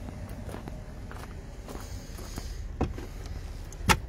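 Footsteps on gravel and small knocks and rustles from handling things in the open boot of a car. A sharp knock just before the end comes as the boot floor is opened.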